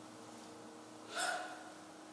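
Faint steady room hum, with one short breath drawn by a man about a second in.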